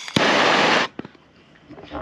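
Bernzomatic TS-4000 trigger-start propane torch fired briefly: a click as it lights, a loud hiss of burning gas for under a second that cuts off suddenly, then a second click.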